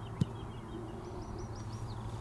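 A small bird singing a run of short, quick, high chirps, then a string of about six rapid repeated notes, against a low steady background rumble. A single sharp click comes just after the start.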